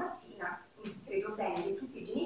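Speech only: a woman speaking Italian into a microphone.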